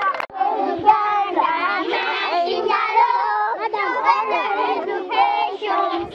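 A group of children singing together, many voices overlapping in a steady chant-like song.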